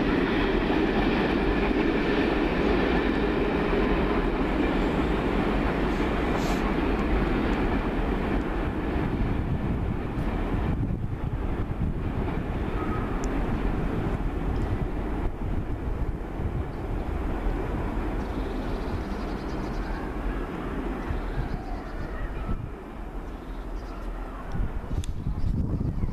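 Railway coaches of a departing excursion train rolling away over jointed track and points, a steady rumble of wheels on rail that slowly fades as the train draws off.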